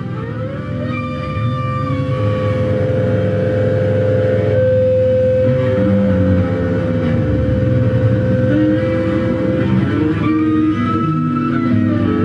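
Electric bass run through effects pedals in an experimental noise improvisation: one steady high note is held for about nine seconds over a dense, heavy low drone. The whole sound grows louder over the first few seconds.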